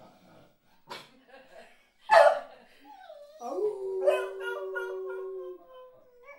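Beagle barking once, loud and short, then howling: a long, steady howl held for about two seconds that slides up in pitch at its start.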